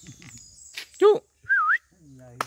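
A short, high whistle about one and a half seconds in: a single tone that dips and rises again. It follows a brief rising-and-falling call about a second in.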